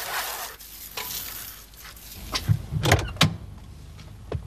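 A car door opening and someone getting into the driver's seat: a few sharp clicks and knocks between about two and a half and three seconds in, over a low rumble.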